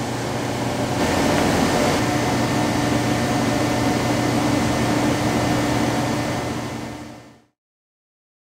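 Waterjet cutter cutting a composite panel: a steady hiss over a low hum. It fades out near the end.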